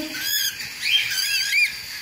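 Newly hatched budgerigar chicks peeping in the nest box: thin, high chirps, with three quick rising-and-falling notes a little after a second in.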